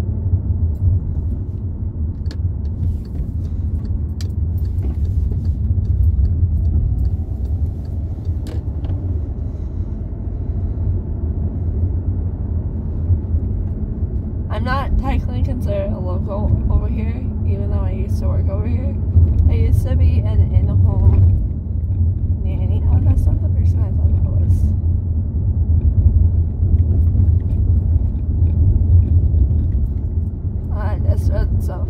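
Steady low rumble of a car's engine and tyres heard from inside the cabin while driving, with a voice for several seconds around the middle.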